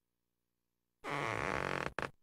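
Cartoon sound effect from the 1993 Bloom County screensaver: one rough blurt of about a second, starting a second in, then a short second blip, as Bill the Cat's cheeks inflate with injected fat.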